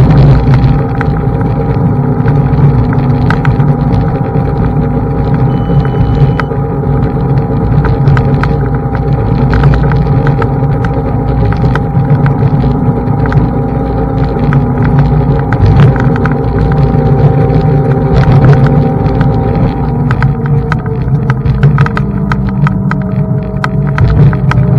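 Xiaomi M365 Pro electric scooter riding over roads and block paving: the hub motor gives a steady whine that drops in pitch near the end as the scooter slows, over low wind and tyre noise, with frequent short knocks from bumps in the paving.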